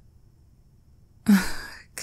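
A woman's short, breathy sigh a little over a second in, starting with a brief voiced tone and fading into breath.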